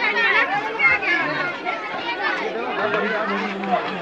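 Crowd chatter: many voices talking at once, overlapping so that no single speaker stands out.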